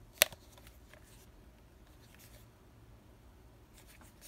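A single sharp click from the plastic flashlight being handled, about a quarter of a second in, followed by faint rubbing and ticking of fingers on its plastic body.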